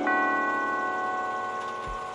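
A bell-like musical chord from the cartoon's score, struck once at the start and left ringing, fading slowly: a chime sting over a scene change.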